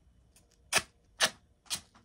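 A run of short, sharp puffs of breath blown out through the lips, about two a second, the strongest about three quarters of a second in, on skin freshly stripped of wax.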